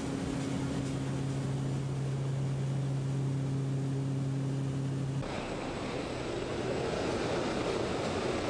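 Steady drone of a skydiving plane's engine heard inside the closed cabin. About five seconds in it changes abruptly to a rougher rushing noise of wind and engine at the open jump door.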